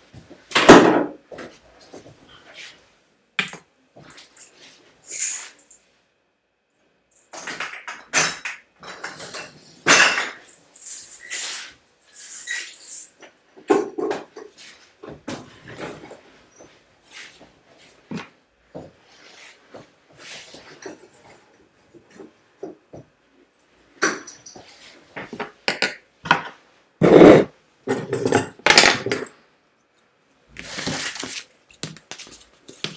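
Irregular knocks, clicks and clinks of small hard objects being picked up, moved and rummaged through, with short rustles in between. The noises come in two busy spells, one in the first half and one near the end.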